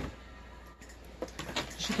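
A pet cat rummaging among gift bags and items: a single click, then a quiet stretch with faint rustling and light ticks.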